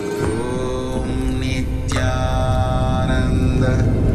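Chanted vocal music: a mantra sung in long held notes, a new phrase beginning about two seconds in, over a low rumbling music bed that slowly grows louder.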